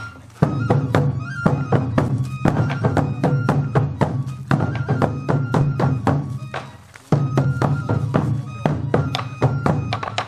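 Sansa Odori festival music: hand-carried sansa taiko drums struck hard in a quick, steady rhythm, with a bamboo flute melody in short held notes over the beat. The drumming drops out briefly right at the start and again about two-thirds through.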